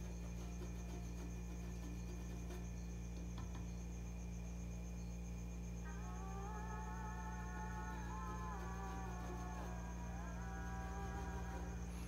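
A steady low electrical hum with a thin high whine runs throughout. About six seconds in, a faint tune of held notes that step up and down comes in and fades out shortly before the end.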